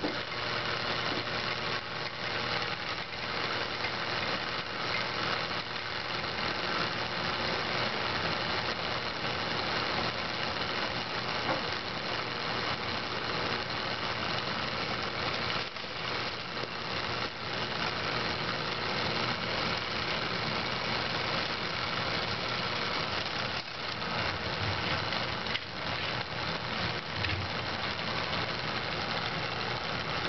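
Small 120-volt double-shafted fan motor running with a steady hum. It draws roughly three times its rated current, the sign of an internal fault that is overheating it toward burnout.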